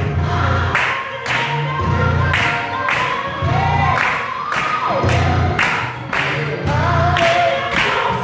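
Gospel choir singing over a band with a strong bass line and a steady beat, about two hits a second.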